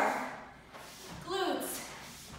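A woman's voice making short vocal sounds, one right at the start and another about a second and a half in.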